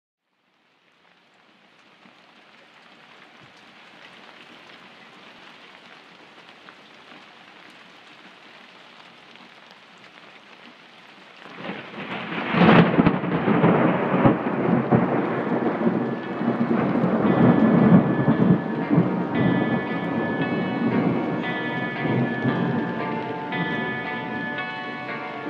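Rain falling, fading in steadily, then a loud thunderclap about halfway through that rolls on as a low rumble. In the last third, sustained musical notes come in and build over the storm at the start of a prog rock track.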